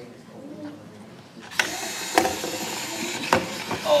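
Mini sumo robots' small electric drive motors start up about a second and a half in, and the robots drive at each other and shove. A few sharp clacks come as they knock together.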